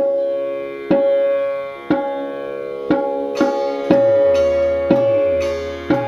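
Tabla keeping the 16-beat teentaal cycle at 60 BPM, one stroke about every second, with sitar strings ringing.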